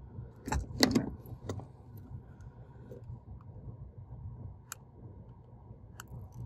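A few short, light clicks and snips of small hand tools and parts being handled on a workbench, with two near the start and one sharp click near the end, over a low steady hum.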